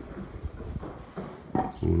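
Footsteps on paving: a few soft, irregular scuffs and knocks. A man's voice starts near the end.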